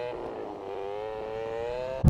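Motorcycle engine running at low speed, its pitch dipping slightly and then climbing slowly as the bike gently accelerates through a turn.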